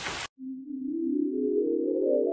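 An edited-in synthesized riser sound effect: a single tone slowly climbing in pitch and swelling in loudness. It comes in just after a voice is cut off abruptly at the start.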